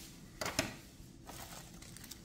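A coiled flat Ethernet cable handled and set down on a table: faint rustling, with a couple of short clicks about half a second in.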